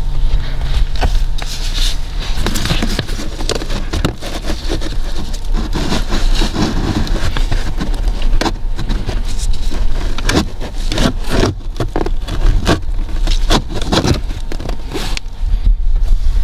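Pleated cabin filter being worked down out of its housing past a plastic trim panel: plastic and filter frame scraping and crackling, with many small clicks and knocks.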